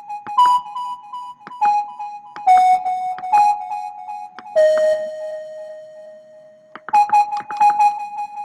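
High flute melody from a software synth (Purity woodwind preset) playing back alone as a short programmed pattern of quick notes. One long lower note is held in the middle, then the phrase starts over.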